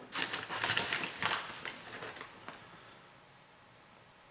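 Plastic bag of shredded mozzarella crinkling as a hand reaches in and sprinkles cheese: a cluster of crackly rustles in the first two and a half seconds that dies away.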